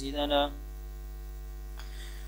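Steady low electrical mains hum. A man's reading voice ends about half a second in, and a faint click comes near the end.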